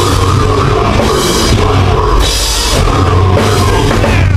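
Heavy metal band playing live and loud: distorted guitars and bass over a drum kit, with cymbal crashes coming in and out in blocks, heard from within the crowd.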